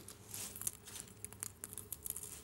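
Faint scattered clicks and soft rustles of a small vase being turned over in the hands.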